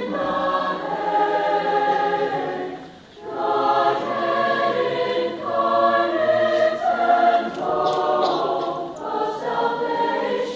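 High-school choir singing long, sustained chords that shift every second or two, with a short break for breath about three seconds in.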